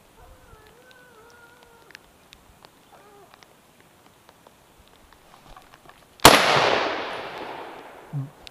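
A single hunting-rifle shot about six seconds in, sharp and loud, its echo dying away over nearly two seconds. Before it, a distant hound bays in drawn-out, wavering calls.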